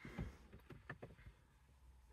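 Near silence with a few faint soft taps, mostly in the first second, as a rubber tray mat is pressed down into a dashboard storage pocket.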